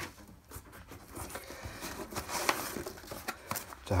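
Rustling of paper and cardboard with irregular light taps and knocks as a cardboard parts box is handled.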